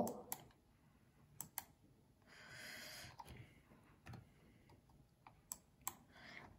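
Faint, sparse clicks of a computer mouse and keyboard, about half a dozen spread through the moment, with a short soft hiss near the middle.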